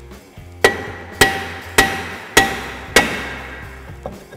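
A hammer striking the face of a 2011 Chevy Camaro's rear disc brake rotor five times, a little over half a second apart. Each blow makes the rotor ring briefly as it is knocked loose from the hub.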